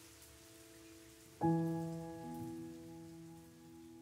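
Gentle rain falling under slow background music. A piano chord is struck about a second and a half in, then rings and slowly fades.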